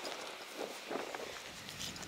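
Footsteps on a gravel path at walking pace: a few soft, separate crunches.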